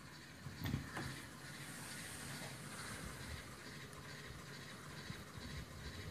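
Faint steady hiss of room tone, with a couple of soft bumps a little under a second in.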